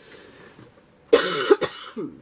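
A woman coughing: a quick burst of two or three sharp coughs about a second in.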